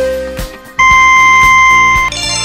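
Quiz countdown timer: a short beep as the count reaches one, then about a second in a longer, higher steady beep that marks time up. Background music with a steady beat runs underneath.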